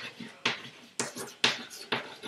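Chalk writing on a chalkboard: a run of short, sharp taps and scrapes, about five in two seconds, as letters are chalked on.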